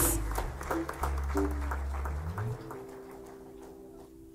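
Congregation clapping, thinning out and fading over the first two and a half seconds, over a keyboard holding sustained low notes that move up to a higher held chord about two and a half seconds in.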